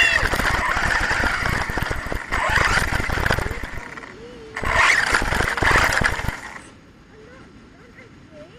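HPI Savage XS Flux brushless RC truck running out of control through long grass, heard from its onboard camera: rough, rumbling motor and tyre noise that dips briefly, comes back, then cuts off about two-thirds of the way through as the truck stops in the grass.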